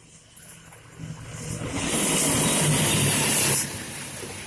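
Diesel-hauled express passenger train passing close at speed, about 120 km/h: a building rumble becomes a loud rush of air and wheels on rail as the locomotive goes by. The sound drops off sharply just before the end as the carriages follow.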